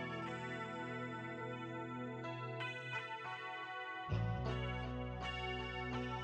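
Background music with sustained chords and picked notes; a deeper bass part comes in about four seconds in.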